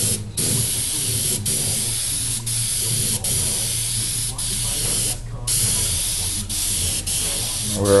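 Small airbrush spraying StewMac lacquer melt, a butyl cellulose solvent, over an old lacquer finish to soften it so that new lacquer will bond. It gives a steady hiss of air and spray, cut by brief pauses about once a second as the trigger is let off, with a steady low hum underneath.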